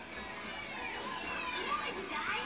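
Faint background voices and music, with no one speaking close by.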